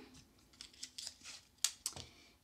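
Clear adhesive tape pulled from a desktop dispenser and torn off: a few short sharp snaps over about a second and a half, the loudest a little past halfway.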